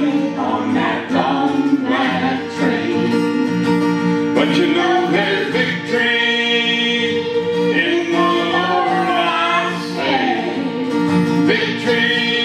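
Voices singing a country-gospel song with held, drawn-out notes, accompanied by a strummed acoustic guitar.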